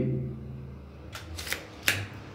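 Steel tape measure being handled and taken off an aluminium frame: a few short scrapes and clicks in the second second, ending in one sharp click.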